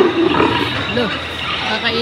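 Animatronic dinosaur's recorded roar played over loudspeakers, loudest at the start, with people's voices around it.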